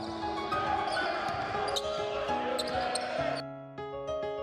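Live basketball game audio in a gym: a ball bouncing on the court, with voices and crowd noise in a large hall and a few short high squeaks, under soft piano music. The gym sound cuts off about three and a half seconds in, leaving the piano alone.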